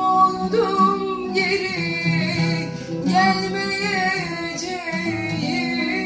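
A woman singing a slow Turkish song in long, wavering phrases over instrumental accompaniment.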